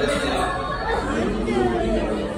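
Indistinct talking in a large indoor hall; no words can be made out.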